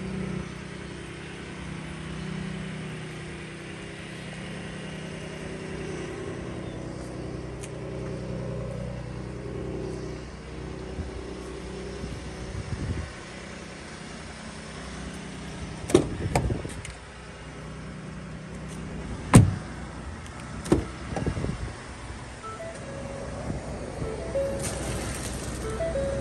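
Steady low engine hum for the first half. Then several sharp clunks of a pickup truck's door being opened and shut: two close together, then two more a few seconds later.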